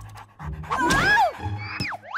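A cartoon dog panting and giving high whines that glide up and down in pitch, over background music.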